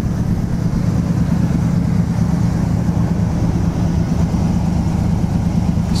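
A car engine idling steadily: an even low rumble that does not change.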